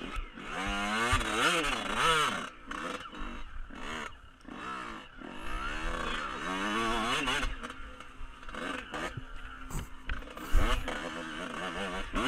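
Dirt bike engine revving up and down over and over, its pitch rising and falling in quick swells as the bike is ridden.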